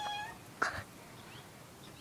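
Domestic cat giving a short, high, even-pitched meow right at the start, followed just over half a second later by a brief noisy burst.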